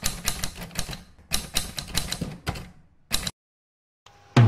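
Typewriter sound effect: rapid keystroke clicks in two runs with a short break about a second in, then one last click about three seconds in.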